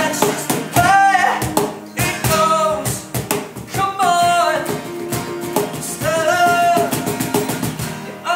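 Acoustic rock band performance: a male lead voice singing a melody over strummed acoustic guitars and a cajon keeping a steady beat.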